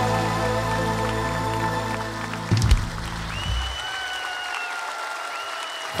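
Live band holding the song's final chord, ended by a sharp closing hit about two and a half seconds in, then audience applause.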